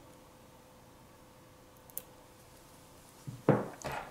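A light click about halfway through, then a short cluster of knocks and rubbing near the end as a disassembled smartphone and its screen assembly are handled with a metal pry tool on a wooden table.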